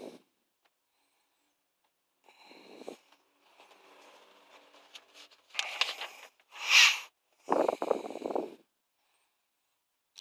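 Paper pages of a workshop manual being turned: a faint rustle about two seconds in, then three louder papery swishes in the second half.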